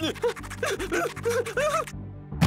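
A quick string of short wordless vocal sounds, grunts and squeaks from cartoon characters tumbling about, over a steady low musical tone.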